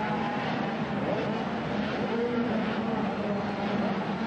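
Several 80cc two-stroke motocross bikes racing together, their engines revving up and down in pitch, overlapping.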